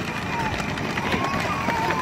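Children's electric ride-on toy jeep driving over gravel, its plastic wheels crunching on the stones, with voices in the background.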